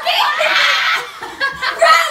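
Young women laughing loudly: one long breathy burst of laughter in the first second, then shorter bursts near the end.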